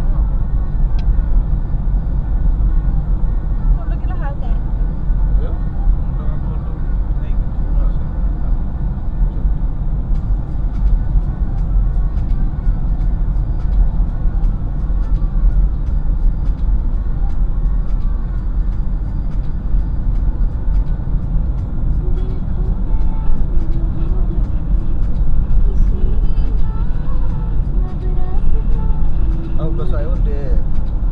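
Road and engine noise inside a moving car's cabin: a steady low rumble from the tyres and engine. Faint voices come through at times, mostly near the end.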